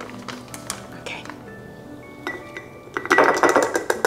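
A plastic measuring scoop clinking and scraping against a glass jar as cacao powder is tipped in: a few light taps, then a quick, louder run of clinks and scraping near the end.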